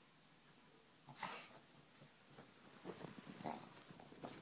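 Brussels Griffon dog making a short sharp sound about a second in, then scrabbling and rustling in a duvet in a quick run of irregular scuffs during the last second or so.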